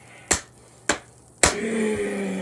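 Two picture books slapped together in a fight game, three sharp smacks about half a second apart, the last the loudest. Near the end a man's drawn-out vocal sound follows.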